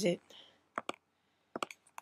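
Computer mouse clicks: a single click a little under a second in, then a quick run of several clicks near the end, as menus in macOS Keychain Access are opened and dismissed.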